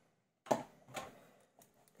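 Handling noise from a wristwatch's steel link bracelet in gloved hands: one sharp click about half a second in, then a softer click a moment later.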